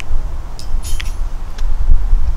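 Wind rumbling on the microphone. A few light plastic clicks and a brief metallic jingle, mostly between about half a second and a second in, come from a handheld key-fob remote being handled as its button is pressed.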